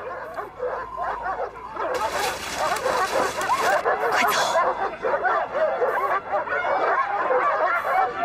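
Several dogs barking and yelping at once, many overlapping calls forming a continuous din that grows fuller about two seconds in.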